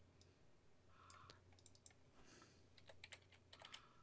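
Near silence with faint, scattered clicks of a computer keyboard and mouse, a few at a time.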